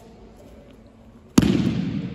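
A judoka thrown with a shoulder throw (seoi nage) lands on the tatami with one loud slap and thud of the breakfall about one and a half seconds in, followed by a long echo in the hall.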